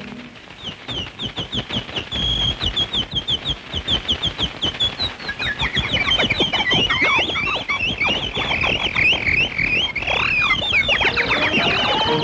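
Cartoon bird chirping: a quick run of short falling chirps that thickens into a whole flock chirping over each other, growing louder. A dense patter runs underneath.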